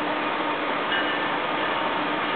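Steady noise of an approaching freight train still some way off, with a few brief, faint, high ringing tones about a second in.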